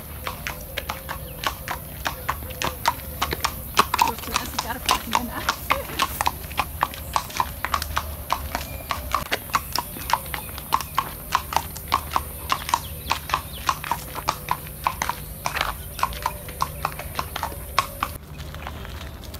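Horse's hooves clip-clopping at a walk on a paved road, a steady rhythm of about three and a half strikes a second.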